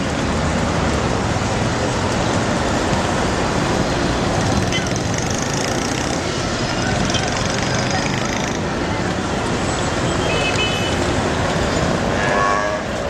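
Busy city street at night: steady traffic noise from cars and motorbikes mixed with the chatter of a crowd.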